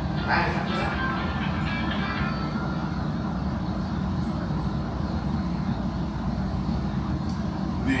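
A steady low rumble of room noise, with quiet, indistinct talk in the first two seconds or so.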